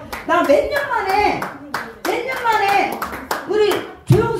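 Repeated hand claps at an uneven pace, with a voice talking over them.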